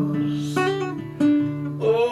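Acoustic guitar strumming sustained chords, with a fresh strum about a second in.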